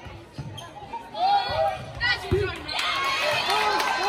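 Volleyball rally in a gym: short, high-pitched shouts from players and spectators, with a thud of the ball being played about two seconds in. The crowd noise thickens near the end, with sharp clicks of ball contacts or shoe squeaks.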